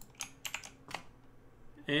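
A few computer keyboard keystrokes, about six quick taps in the first second, over a quiet room.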